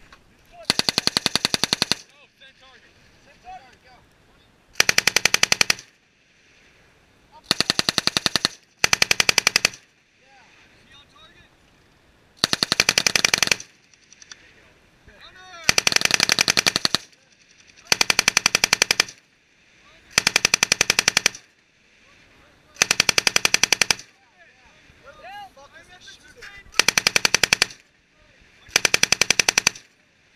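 M240 7.62 mm belt-fed machine gun firing eleven short bursts of automatic fire, each about a second long, a few seconds apart.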